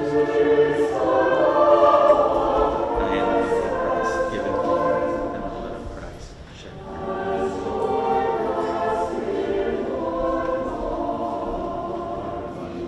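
Church choir singing in parts, two sustained phrases with a brief drop in between, about halfway through.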